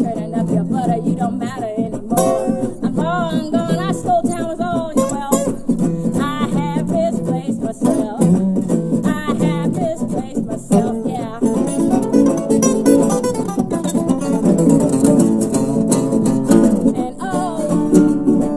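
A resonator guitar and a steel-string acoustic guitar playing a blues-style song together, picked and strummed. About two seconds in, a woman's voice sings over them for a few seconds.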